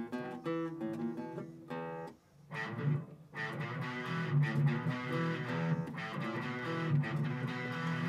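An acoustic guitar and an electric guitar playing a song part together, chords and notes; the playing breaks off briefly about two seconds in, then carries on.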